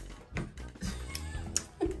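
Quiet background music with a few light clicks; a short spoken "uh" near the end.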